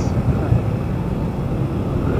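Steady low rumble of wind on the microphone and road noise from a moving motorcycle.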